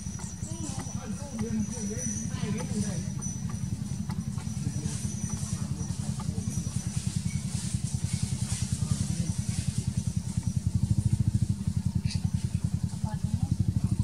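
An engine running with a fast, even low pulse, growing louder over the last few seconds.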